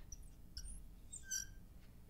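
Marker squeaking on a glass lightboard as a circled letter is drawn: a short, high squeak about half a second in and another, longer one near the end.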